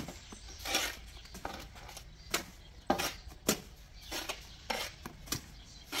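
Steel mason's trowel scooping wet mortar and clinking and scraping against a metal wheelbarrow and an aluminium screed rule, in irregular sharp clinks and scrapes.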